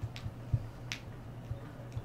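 Two short, sharp clicks about three-quarters of a second apart, over a steady low hum, with a few soft low thumps.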